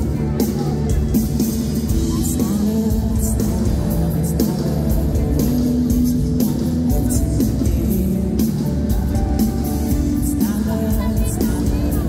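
Live pop band playing a song, with drums and electric guitar under a male lead vocal.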